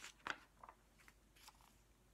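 A paper page of a picture book turned by hand: a few faint rustles and crinkles in the first second and a half.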